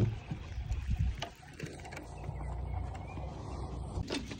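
Baitcasting reel being cranked to bring in line, a steady low whirr that sets in a little over a second in, after a sharp click at the start and a few light knocks.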